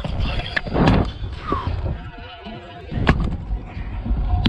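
Stunt scooter rolling across a skatepark ramp deck, its wheels rumbling over the panels, with a loud thump about a second in and a sharp knock about three seconds in.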